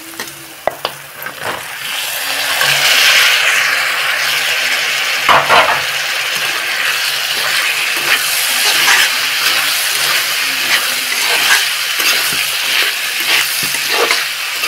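Onions sizzling in hot oil in a kadhai, the sizzle growing louder about two seconds in as diced potatoes go in to fry. A metal spatula scrapes and knocks against the pan as it stirs.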